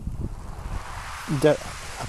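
A soft hiss of small waves washing over a shingle beach, swelling during the first second. A man's voice makes one short sound about one and a half seconds in.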